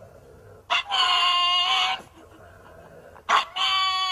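Pug howling: two long, high, even-pitched howls of about a second each, the first about a second in and the second near the end.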